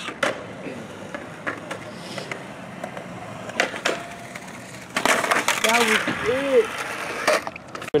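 Skateboard on a concrete skatepark: wheels rolling with sharp clacks and knocks of the board, then a louder, rough scraping stretch from about five seconds in that lasts a couple of seconds.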